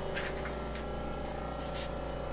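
Steady low hum with faint steady tones and hiss in the background, broken by a few faint soft ticks.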